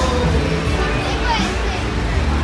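Busy restaurant din: many people talking at once, children's voices among them, over background music with a deep, steady bass.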